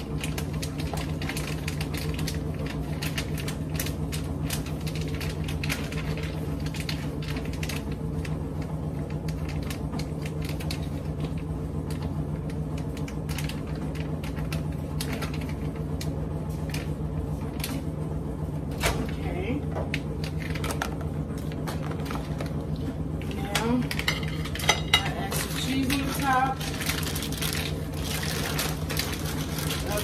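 Frequent light clicks and knocks from handling a plastic food container of ground-meat filling on a kitchen counter, over a steady low hum.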